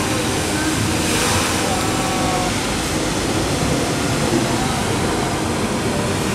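Steady rushing hiss of the Bellagio fountain's water jets and falling spray, swelling briefly about a second in, over a crowd of onlookers talking.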